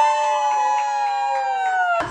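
A woman's voice holding one long, high-pitched shout that sags slightly in pitch and cuts off abruptly at the end.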